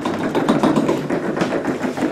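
Upright piano being rolled across a wood floor: a steady, continuous rolling noise from its wheels.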